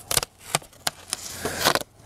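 Hands handling a sheet of paper on a painting board: a few sharp clicks and taps, then a short papery rustle near the end.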